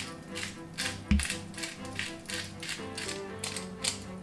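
Hand-held salt and pepper grinders being twisted over a steak, a rapid ratcheting crunch at about three to four clicks a second, over background music. A single low thump about a second in is the loudest sound.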